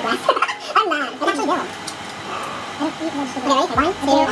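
A few people's voices in light laughter and indistinct chatter, with another laugh near the end.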